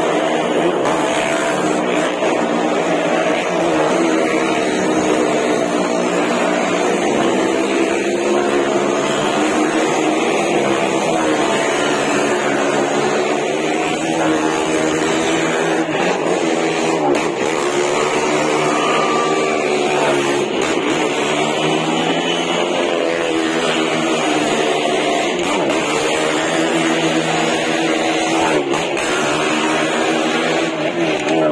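Car and motorcycle engines running hard as they circle the vertical wooden wall of a well-of-death pit, their pitch rising and falling in continuous waves.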